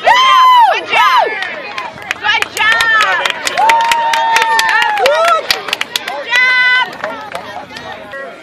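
Spectators shouting and calling out in high-pitched voices, with one long held call midway and sharp claps scattered among them.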